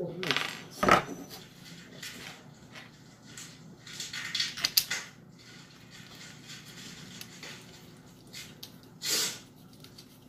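Hard plastic parts of a Minelab Equinox 800 metal detector being handled and fitted together: the arm cuff is worked onto the shaft. A sharp click comes about a second in, a run of rattling and clicks follows at around four to five seconds, and a short rustle comes near the end.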